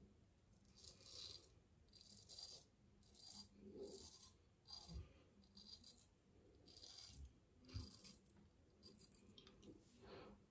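Double-edge safety razor (PAA Symnetry) scraping through lathered stubble in short strokes, about ten faint strokes, each under a second apart.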